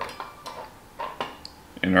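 A few light, sharp clinks and taps of kitchenware, spaced irregularly through a quiet pause, with a spoken word just before the end.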